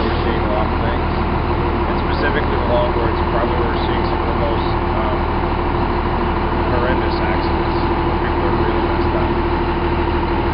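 Parked fire engine idling, a loud, steady drone with a constant hum, and a man's voice talking faintly underneath it.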